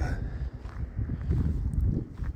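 Wind gusting across the microphone, an uneven low buffeting rumble.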